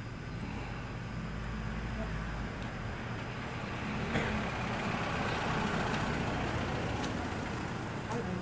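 Street traffic: a low, steady engine hum from a motor vehicle running nearby, with the noise swelling louder about halfway through.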